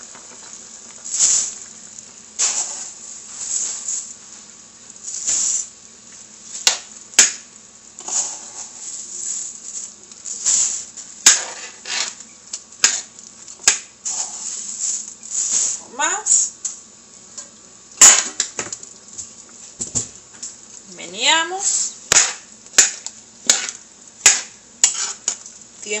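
A metal spoon knocking, clinking and scraping against a metal cooking pot as rice is stirred into boiling broth, with many sharp knocks and two squeaky drags of the spoon about two-thirds of the way through.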